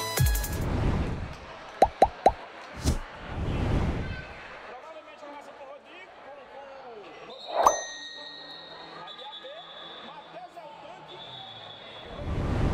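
Futsal ball bouncing sharply on a gymnasium court three times in quick succession about two seconds in, with faint voices echoing in the hall.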